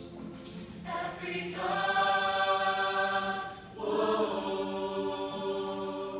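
Mixed high-school choir singing held chords. They swell louder about two seconds in, break off briefly just before the fourth second, then come back in on a new sustained chord.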